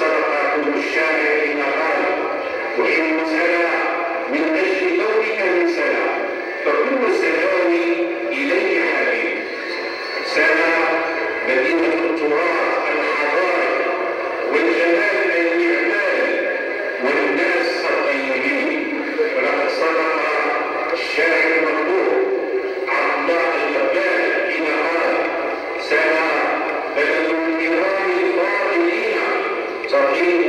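A man reading aloud in Arabic into a microphone, heard through a loudspeaker. The voice has a melodic, recited delivery and sounds thin, with little low end.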